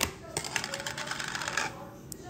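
A sharp click, then about a second of rapid crackling and crinkling of plastic packaging being handled.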